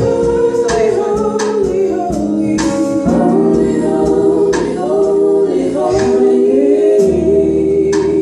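A gospel vocal group of women singing together in harmony into microphones.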